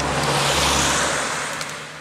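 A car passing close by on the road: its tyre and engine noise swells to a peak within the first second, then fades away.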